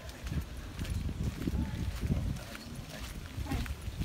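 Footsteps on a sandy dirt road, with wind buffeting the microphone.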